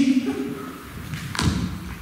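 A single thump about halfway through, most likely the handheld microphone being set down on or knocked against the table, with the end of a spoken phrase just before it.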